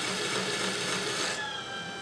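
Electric pottery wheel running with a steady hum while wet clay, pressed down by hands as it spins, gives a rushing swish. About one and a half seconds in the swish stops as the hands come off the clay, leaving the wheel's hum.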